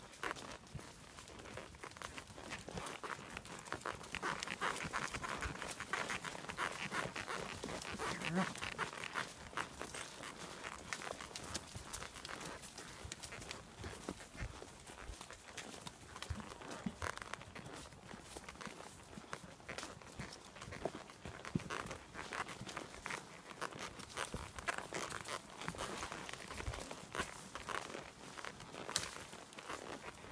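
A horse walking along a leaf-littered woodland trail: hooves crunching dry leaves and twigs in an irregular crackle, with branches scraping past horse and rider, busiest from about four to ten seconds in.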